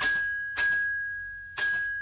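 Bell-like chime notes of an electronic Christmas remix played on drum-pad controllers: three struck notes, each ringing and fading, over a steady high ringing tone.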